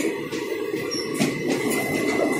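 Express train coaches rolling steadily past on departure, their wheels clicking now and then over rail joints, with a thin steady wheel squeal above the rumble.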